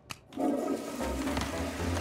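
Cartoon toilet flush: a short click, then a rushing of water. About a second in, music with a low, pulsing bass beat starts beneath it.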